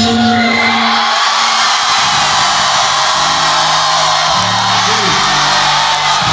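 Live hip-hop music through a venue's sound system with a crowd cheering and whooping over it. The bass cuts out for about a second and a half near the start, then the beat comes back in.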